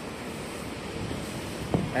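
Steady wash of wind and sea water along a shoreline, with some wind on the microphone.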